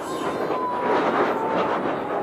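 Electric RC monster truck launching off a dirt jump and flying: a loud rushing sound with a motor whine that slowly falls in pitch while the truck is in the air.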